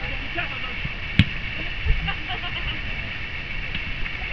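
Open-air ambience of a youth football match: faint distant shouts and calls from players on the pitch over a steady low rumble. There is one sharp knock about a second in and a duller thump near two seconds.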